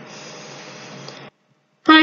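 Faint steady room hiss for about a second, then the sound cuts to complete silence for about half a second, an edit in the audio, before a voice comes back.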